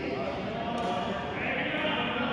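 Indistinct voices of people talking, echoing in a large indoor badminton hall.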